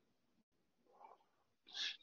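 Near silence: room tone, with a faint brief sound about a second in and a short intake of breath near the end.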